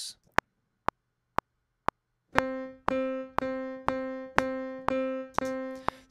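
Logic Pro X metronome giving a four-click count-in at 120 bpm, then a software piano sound playing notes around middle C, re-struck roughly every half second in time with the click as MIDI notes are recorded.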